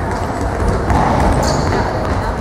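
Indoor football played in an echoing sports hall: ball thuds on the hard court, shoes squeak on the floor about one and a half seconds in, and voices carry across the hall.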